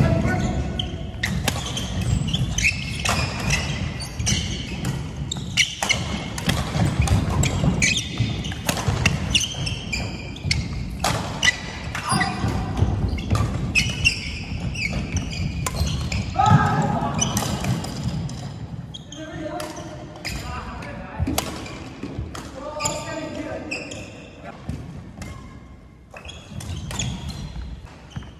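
Badminton doubles rally: rackets striking the shuttlecock again and again, with sneakers squeaking and thudding on the wooden court floor.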